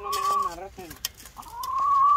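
Domestic geese honking: a short call at the start, then a longer, drawn-out call that rises slightly near the end.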